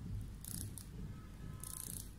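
Plasma pen firing from its needle tip held just off the skin: short bursts of high hiss about once a second over a low hum.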